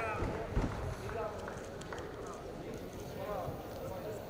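Scattered voices calling out in a large arena hall, with a dull thump about half a second in and several sharp knocks.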